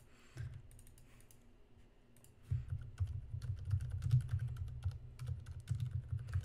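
Typing on a computer keyboard: a few scattered key clicks, then a quick continuous run of keystrokes from about two and a half seconds in.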